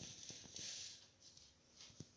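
Near silence: a faint rustle and a few soft ticks, as of hands and wires being handled.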